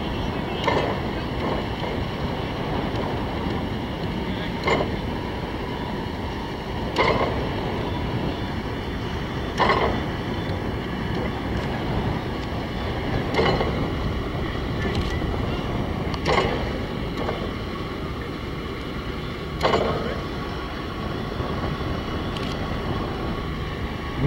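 Diesel engine of a mobile crane running steadily while it lowers a heavy load, with wind on the microphone. About seven short knocks come at irregular intervals.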